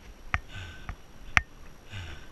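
A person breathing hard from the effort of an uphill climb: heavy, rhythmic breaths about every second and a half, with a couple of sharp sniff-like clicks, the loudest late on.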